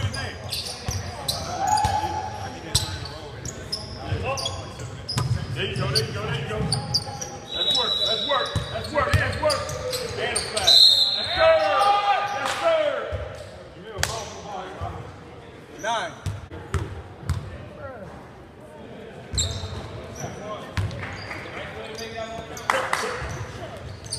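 A basketball bouncing on a hardwood gym floor during play, with players' voices calling out across the court. Two short high squeaks come about 8 and 11 seconds in.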